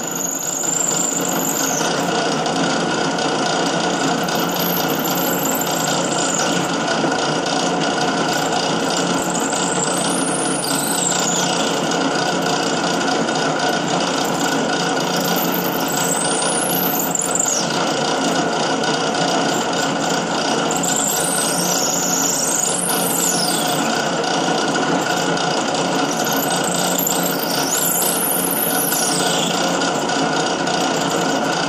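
Drill press running steadily as its bit bores into a pool ball. A high squeal from the cut rises and falls every few seconds.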